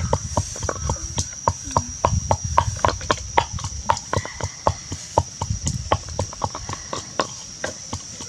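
Pestle pounding in a clay mortar, a steady run of sharp knocks with dull thuds, about three strikes a second.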